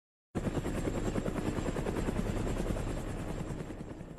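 A rapidly pulsing, noisy whir, like a helicopter rotor, opens the track. It starts suddenly about a third of a second in and fades toward the end.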